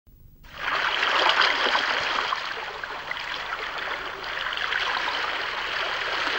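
Water lapping and washing, a steady rush that comes in about half a second in, as of sea water around a moored ship.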